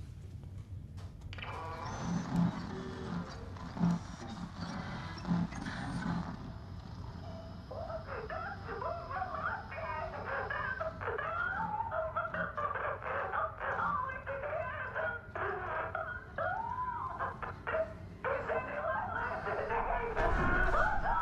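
Film soundtrack: a chorus of overlapping animal-like whining cries that bend up and down in pitch, starting about seven seconds in, over a low rumble. Before them there is a hiss with a few low thuds.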